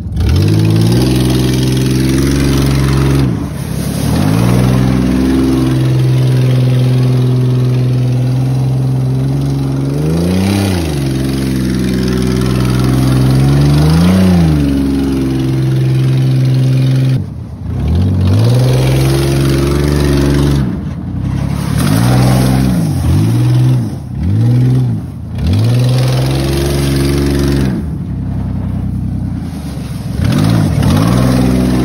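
Ford Bronco II's V6 running loud with no exhaust as it drives on gravel. It holds steady revs at first, is blipped twice in the middle, then revs up and down repeatedly near the end.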